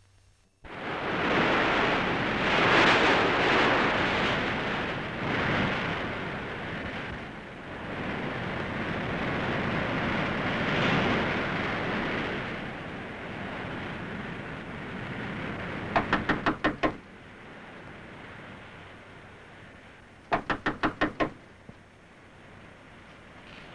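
Surf washing in swells, followed by two bouts of quick knocking on a door, about six knocks each, a few seconds apart.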